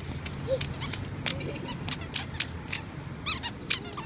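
A toddler's squeaky shoes squeaking with each quick step on stone paving, about three to four short chirps a second in an uneven run.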